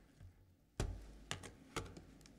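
Handling noise at a lectern microphone: three sharp knocks about half a second apart, the first the loudest with a dull thud under it.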